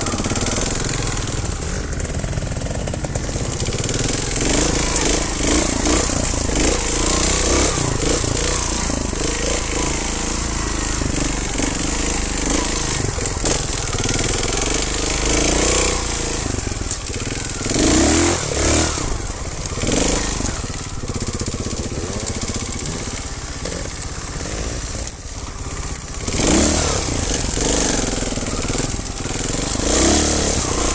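Trial motorcycle engine running under the rider on a rough trail, its pitch rising and falling as the throttle is opened and closed. A few short, sharp knocks come about 25 seconds in.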